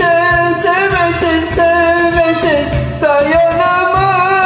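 A man singing a Turkish song over a karaoke backing track with a steady beat, holding long sustained notes.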